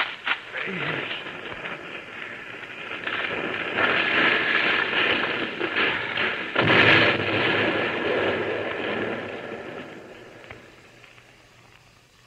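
Old radio-drama sound effect of a dynamite-laden car going over a ravine: a swelling crash and rumble, then a loud blast about seven seconds in, followed by a long rumble that dies away.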